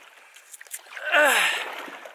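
A man's breathy "uh" falling in pitch about a second in. Faint splashing and dripping of a double-bladed paddle working the water of a canoe lies under it.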